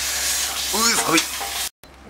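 Brazilian wieners and vegetables frying and being stirred for curry, a steady sizzle that cuts off suddenly near the end.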